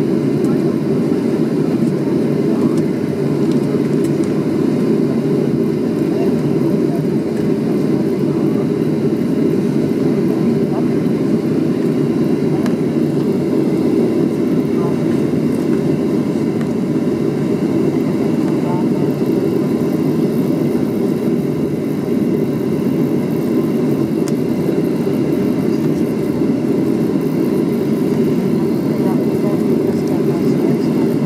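Steady cabin noise of a Boeing 737-300 taxiing, its CFM56 turbofan engines running at idle, heard from inside the cabin by a window over the wing: an even low rumble with no change in level.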